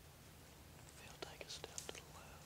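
Faint whispering in the second half, a few short breathy syllables over an otherwise near-silent background.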